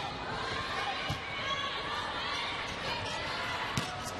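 Indoor volleyball rally heard through the arena: a steady crowd murmur, with a sharp ball hit about a second in and another near the end.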